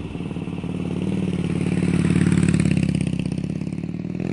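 Motorcycle engine running with a steady, pulsing rumble that swells a little in the middle and eases near the end.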